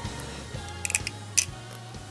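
A few light clicks of plastic LEGO pieces being handled and put back into a toy van, over a low steady hum.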